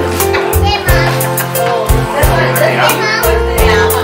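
Music with a steady drum beat and bass line, with children's voices and chatter over it.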